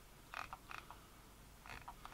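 A few faint short clicks over near-silent room tone: one about a third of a second in, another a little later, and a pair near the end.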